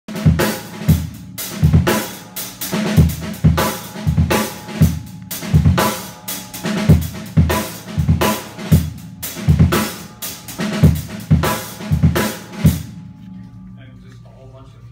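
Drum kit played live in a busy, layered groove: bass drum about twice a second under sharp snare rimshots, hi-hat and cymbals. The groove stops suddenly about a second before the end.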